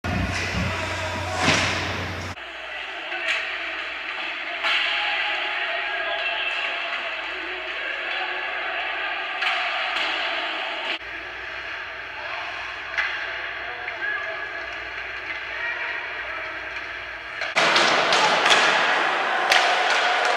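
Live ice hockey game sound from the rink: a steady hum of arena and crowd with scattered thumps and slams of pucks, sticks and bodies against the boards. The sound changes abruptly several times.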